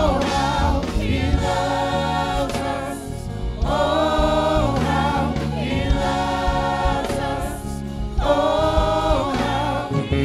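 Gospel praise team of several singers singing slow, held phrases in harmony over live band accompaniment.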